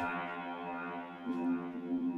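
Sustained, gritty synthesizer drone from an OSCiLLOT modular synth patch in Ableton Live, run through a Guitar Rig distortion preset and delay; the held notes shift about a second and a half in.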